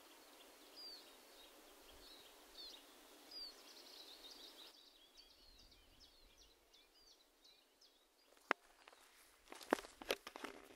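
Faint outdoor ambience: small birds chirping in quick, repeated short calls over a low hiss, then a few sharp clicks near the end.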